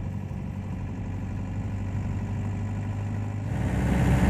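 Swapped VW 1.9 L ALH TDI four-cylinder diesel heard from inside the cab, running steadily at low revs around 1500 rpm. About three and a half seconds in it grows louder as the throttle opens and the engine pulls under load.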